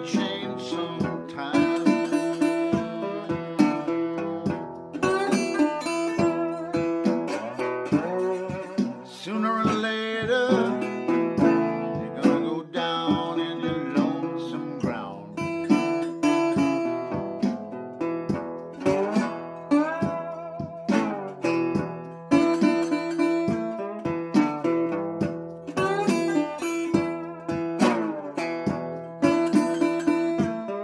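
1931 National Duolian steel-bodied resonator guitar in open D tuning, fingerpicked and played with a metal bottleneck slide. An instrumental country-blues passage of picked notes with sliding glides between pitches over a repeating bass note.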